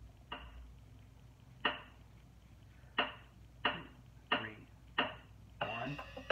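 Sharp, clap-like percussive hits of a hip-hop drum beat starting up: two spaced unevenly, then a steady pulse of about one every two-thirds of a second.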